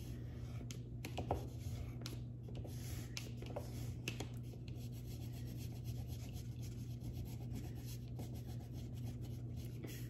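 A drawing tool scratching and rubbing across paper in curved strokes, most of them in the first few seconds, over a steady low hum.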